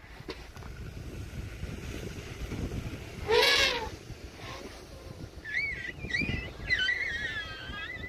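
Steady low wind rumble on the microphone, broken about three and a half seconds in by one short, loud voice-like call, then a high, wavering voice in the last couple of seconds.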